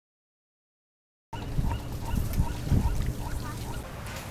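Dead silence for about the first second, then birds calling: short pitched calls repeated about three times a second, over a low rumble of background noise.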